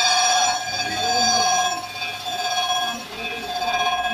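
Crankshaft grinding machine's abrasive wheel grinding a steel crankshaft journal, throwing sparks. It makes a steady, high-pitched whine with overtones that swells and eases a few times.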